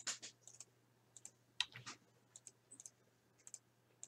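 Faint, scattered clicks of a computer mouse being worked, coming singly and in small clusters at irregular intervals, over a faint steady low hum.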